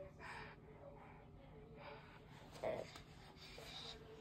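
Baby's soft breathing as she strains to climb onto a bed, with one short vocal sound of effort about two and a half seconds in.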